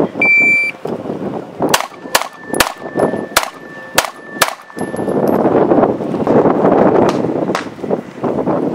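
An electronic shot timer beeps once, then a CZ 75 pistol fires a rapid string of about eight shots, with two more shots near the end. A faint high ringing hangs under the first string.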